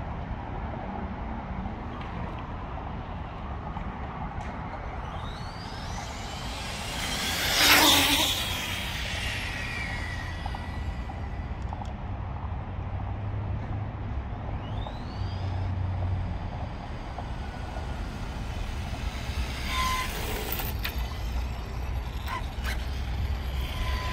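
Kyosho GT2-E electric RC car driven around on asphalt, its motor whining up and down in pitch as it speeds up and slows. It is loudest as it passes close about 8 seconds in, over a steady low rumble.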